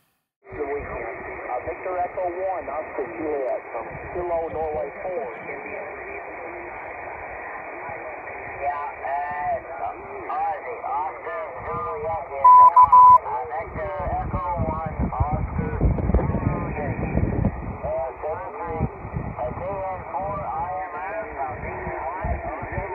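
A distant amateur radio operator's voice on 20-metre single sideband (14.222 MHz USB), received on a Yaesu FT-817 portable transceiver through a Watson Multi Ranger whip antenna and heard from the radio's speaker: thin, muffled, with steady band hiss behind it. A loud short beep sounds about halfway through, and a low rumble comes on the microphone a little later.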